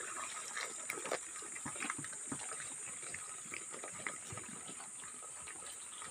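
Water poured from a plastic bucket into a pig trough, splashing and gushing. A steady high-pitched hiss runs underneath.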